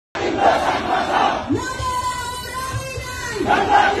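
Large crowd of marchers shouting slogans together in rhythmic bursts. About a second and a half in, the shouting gives way to one long held call, and the crowd shouting returns near the end.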